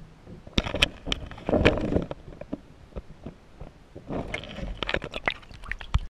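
Handling noise on a small camera held close to the microphone: irregular clicks and knocks, with a stretch of rubbing about a second and a half in and a quick run of clicks near the end.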